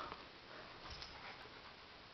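Faint small sounds from a pet dog, barely above the quiet of the room.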